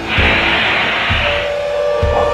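Aerosol can of coloured hair spray hissing for about a second and a half, over music with a held note.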